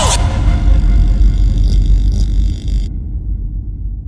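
Closing sound of a hard techno track: a loud, deep rumbling bass with hiss above it. The hiss cuts off suddenly about three seconds in, and the low rumble is left to die away.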